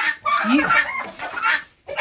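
Chickens clucking and squawking in a close, excited run of calls that stops briefly just before the end, with one short spoken word about half a second in.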